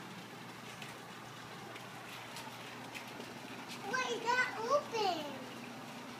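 A young child's high voice: a short vocal outburst with no clear words, beginning about four seconds in and lasting about a second and a half, its pitch falling at the end.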